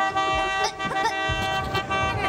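A boat's horn held in one long, steady blast, with squeaky, cartoonish Minion chatter over it.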